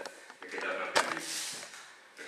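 Indistinct talking among people at a table, with a sharp click about a second in.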